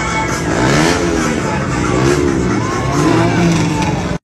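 Vehicle engines revved up and down about three times, each rev rising and then falling in pitch.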